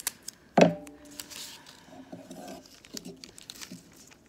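Masking tape pulled off its roll, with one sharp loud tearing rip about half a second in, then quieter crinkling and peeling sounds as the strip is handled and stretched.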